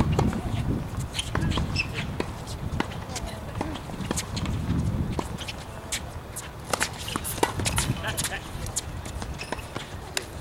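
Tennis ball sharply struck by rackets and bouncing on a hard court during a point, a quick run of knocks after the serve about six seconds in, with players' shoes scuffing. A steady low rumble runs underneath.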